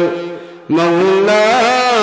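A man's voice chanting in a long-drawn, melodic sermon style, holding and sliding between notes. The voice fades off just after the start and comes back in about two-thirds of a second in with another long held note.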